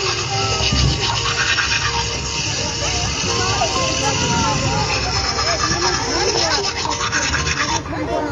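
Running tap water and the scrub of teeth brushing from an animated cartoon played through a laptop speaker, with light music and many children talking at once. The water sound cuts off suddenly near the end.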